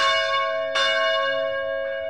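A bell-like chime struck at the start and again just under a second in, with a faint third stroke near the end, each time ringing on and slowly fading.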